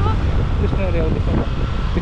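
Wind noise on the microphone of a moving motorcycle, with the engine and road noise underneath, steady and loud.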